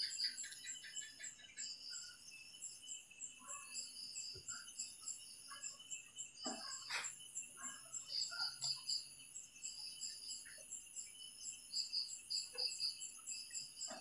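Faint outdoor insects chirping in a steady high pulsing rhythm, with scattered short bird chirps and one sharp click about halfway through.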